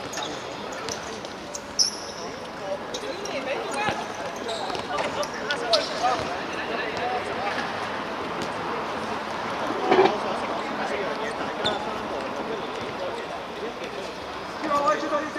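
Hard outdoor court ambience: a background murmur of voices with scattered short thuds of balls bouncing on the concrete, and a brief louder burst about ten seconds in.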